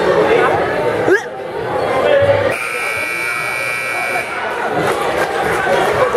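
Gymnasium scoreboard buzzer sounding one steady tone for about two seconds, starting about halfway through, over the chatter of a crowd in a large hall.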